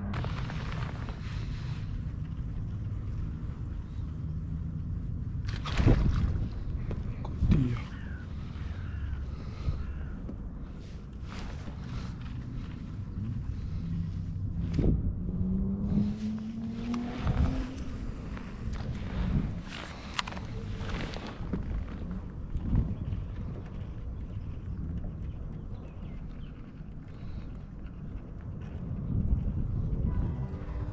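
Irregular knocks and clatter of gear handled on a plastic fishing kayak, over a steady low rumble, with a short rising whine about halfway through.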